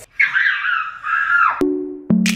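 A high-pitched, wavering squeal lasting over a second, cut off abruptly as electronic music with a steady beat starts near the end.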